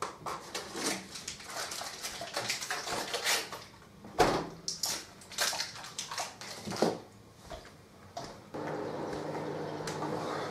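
Irregular clinks, knocks and scrapes of kitchen utensils and containers being handled. Near the end a microwave oven starts up with a steady hum, melting butter.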